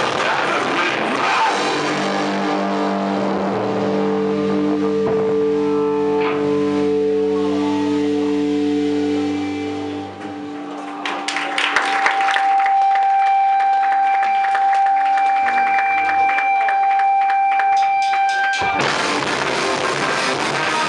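Hardcore band playing live through guitar amplifiers with a drum kit. The full band plays at first, then a distorted chord is held and rings out for several seconds before dying away. A steady high ringing tone sounds over choppy hits until the whole band crashes back in near the end.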